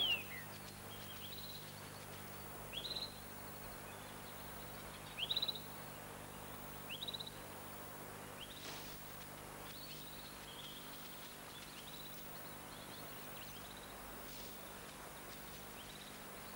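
A bird giving short, high, rising chirps every second or two, fading out after about ten seconds, over a faint steady hiss of outdoor ambience.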